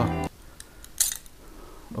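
Metal concealed cabinet hinge with a soft-close damper clicking as it is handled: a couple of faint light clicks, then one sharp metallic click about a second in.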